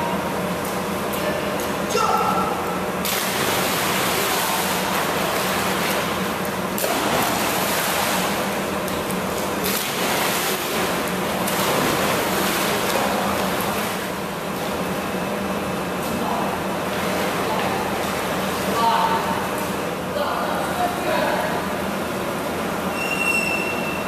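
Echoing splashing and sloshing of water in an indoor pool as children jump in and swim, over a constant low hum, with children's voices now and then.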